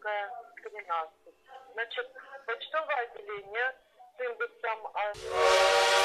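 Voices talking over a phone line. About five seconds in, a loud, steady whistle-like tone with many overtones cuts in abruptly and becomes the loudest sound.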